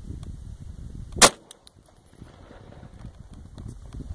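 A single 9mm pistol shot about a second in, fired from a Glock 22 fitted with a 9mm conversion barrel.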